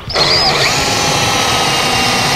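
Drill spinning up with a rising whine, then running steadily as its stepped pocket-hole bit bores through plywood in a pocket-hole jig.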